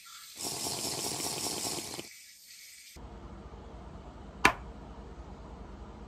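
A rush of running water lasting about a second and a half, then faint room noise with a single sharp click about four and a half seconds in.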